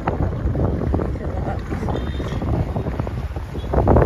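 Wind buffeting the microphone while riding on a motorbike along a dirt road, with a low rumble from the bike underneath.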